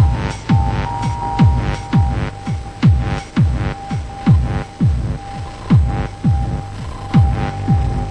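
Electronic music: deep kick drums that drop sharply in pitch, struck in pairs about every second and a half, each with a short hiss on top, over a steady high electronic drone.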